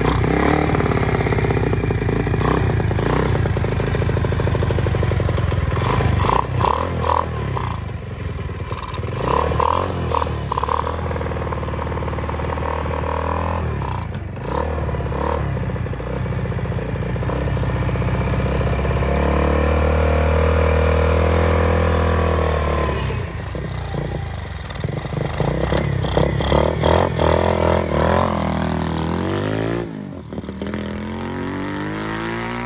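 1970 Honda CT70H Trail 70's small single-cylinder four-stroke engine, bored out to 109cc with an aftermarket exhaust and Mikuni carburetor, running from a cold start on choke. Several quick throttle blips come early on, then a steadier high idle comes about two-thirds of the way through. Near the end the revs rise and fall as the bike pulls away.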